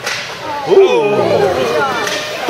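A sharp crack of a hockey puck being struck at the start. From just under a second in, several spectators shout at once, their voices overlapping and gliding up and down, loudest near the start of the shouting.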